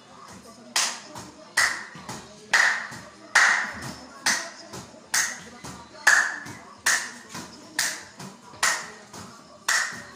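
A volleyball being set overhead with both hands again and again, with a hand clap between touches. There are about eleven sharp slaps at an even pace, a little under one a second.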